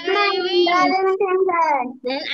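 A young child reciting a sentence in a sing-song, chanting voice, the words drawn out on a fairly level pitch.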